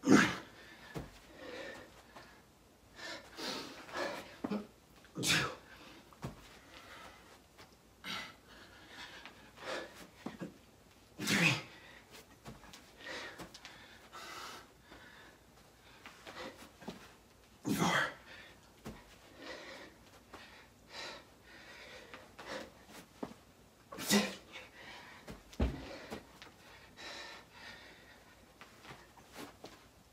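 Burpees done without rest: a sharp burst of breath and body movement about every six seconds, one per rep, with smaller gasps and puffs of heavy breathing between. The breathing is that of a man near exhaustion deep into an hour of non-stop burpees.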